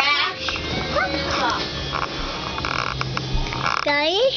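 A small child making wordless, pitched vocal sounds that glide upward, about a second in and again near the end, with music playing in the background.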